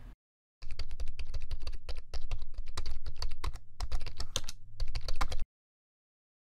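Rapid, irregular clicking like keyboard typing over a low hum. It starts about half a second in and cuts off suddenly near the end.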